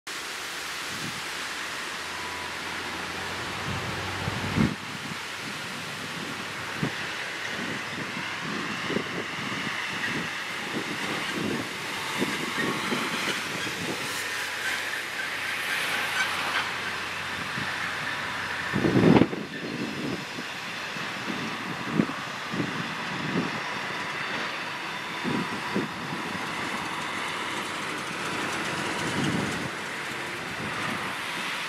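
ChME3 diesel-electric shunting locomotive approaching slowly with wagons: a steady low engine hum under irregular knocks and clanks from the wheels and couplings on the old track, the loudest about two-thirds of the way in. Wavering high squeals, typical of wheel flanges on a curve, come and go in the middle.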